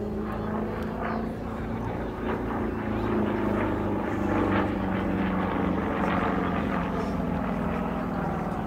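Single-engine aerobatic propeller plane flying a display overhead: a steady engine and propeller drone whose pitch slowly sinks through the second half.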